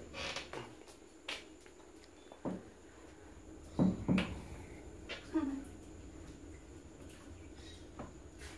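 A quiet room broken by a few short, soft clicks and knocks, with a brief murmured voice about five seconds in.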